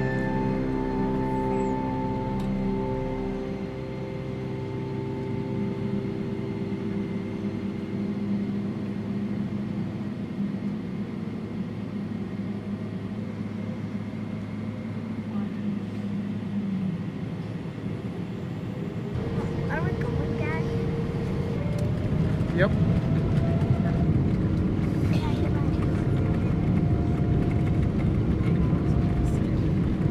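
Jet airliner engines spooling up to takeoff power, heard inside the cabin: a quieter steady cabin hum under background music gives way, about two-thirds of the way in, to a rising whine and a louder, steady roar as the takeoff roll begins.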